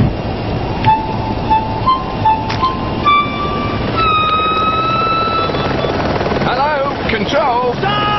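A short run of notes climbing step by step, then one long held note, over the steady low rumble of a helicopter. Near the end, shouts rise and fall in pitch.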